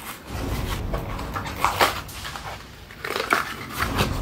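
Plastic blister packaging and cardboard backing of a Hot Wheels car crinkling and tearing as it is opened by hand, with louder crackles near the middle and again near the end.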